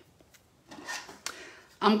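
Brief, faint rustling and rubbing of paper and plastic being handled on a craft work mat, with one light tick, before a woman starts speaking near the end.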